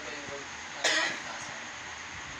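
A person gives one short, sharp throat-clearing cough about a second in.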